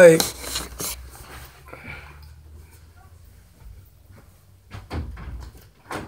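Handling noise as a phone is moved and set down, then a quiet room with a few short clicks and knocks near the end as a hand takes hold of a closet door's knob.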